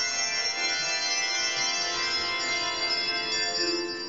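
Handbell choir ringing many bells together, the overlapping notes sustaining and dying away near the end.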